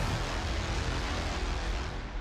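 Low rumble with a hiss on top and no musical notes: the sustained tail of a cinematic trailer impact, starting to die away near the end.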